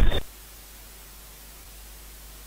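Steady, even hiss of static with no other sound, following the last syllable of a man's voice that cuts off just after the start.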